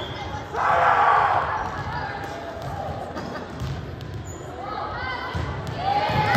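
Volleyball being played in a reverberant gymnasium: a loud burst of voices from players and spectators near the start, then ongoing calls and chatter, with a few sharp ball strikes echoing in the hall.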